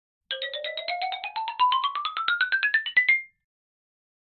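Short electronic intro jingle: a rapid run of ringtone-like notes, about nine a second, over a tone that rises steadily in pitch. It stops abruptly about three seconds in.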